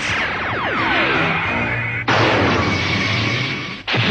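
Cartoon sound effects for a ghost's energy blast. Several falling electronic whines play over the music score. About two seconds in, a sudden loud rushing blast starts, runs for almost two seconds and breaks off just before the end.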